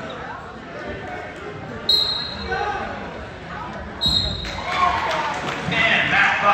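Referee's whistle blown in two short, shrill blasts about two seconds apart, over voices in a large gym. The whistle comes as the referee starts the wrestling bout.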